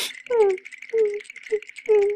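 A cartoon character's short vocal cries, four in quick succession, each dropping in pitch, over a fast, continuous rattle and a steady high tone.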